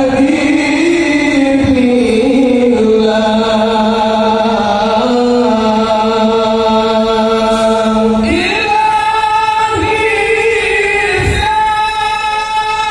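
Shalawat, devotional song praising the Prophet, sung by many voices in long held notes, moving up to a higher note about eight seconds in.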